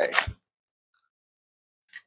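A clear plastic bag crinkling briefly as a small plastic toy is slipped out of it, then the sound cuts off to dead silence, broken by one short faint crackle near the end.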